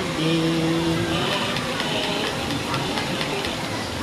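A voice holds one sung note for about a second. Then a battery-powered toy parrot's small motor whirs and rattles as the toy flaps its wings.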